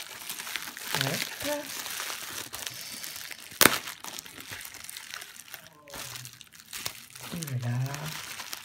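Plastic bubble wrap crinkling and rustling as it is peeled off a wrapped gift by hand, with many small crackles and one sharp snap about halfway through.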